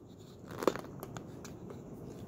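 Fabric being handled, a soft crinkling rustle with a few small clicks and one sharper click about two-thirds of a second in.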